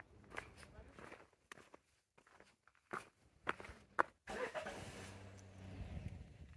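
Footsteps on cobblestone paving, a few uneven steps with sharp clicks. About four seconds in, a steady low hum with a rushing noise sets in and stays louder than the steps.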